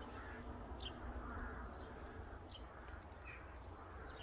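Faint bird calls: several short, high chirps scattered through, over a low, steady background rumble.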